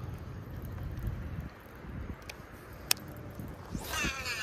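A baitcasting reel gives a sharp click about three seconds in, and the swish of a rod being cast starts right at the end, over low wind rumble on the microphone.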